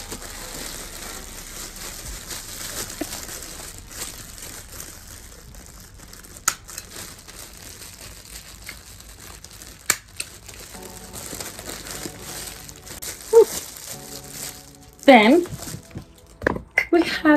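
Clear plastic packaging crinkling and rustling as it is handled and folded, with a couple of sharp taps about six and ten seconds in.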